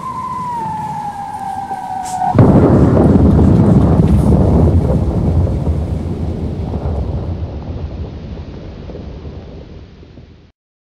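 Sound effect of a falling bomb: a whistle sliding steadily lower in pitch, then a sudden loud explosion about two seconds in, whose rumble slowly dies away.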